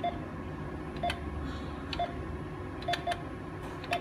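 Japan Post Bank ATM touchscreen keypad beeping once for each digit pressed: six short beeps at an uneven pace as an account number is keyed in.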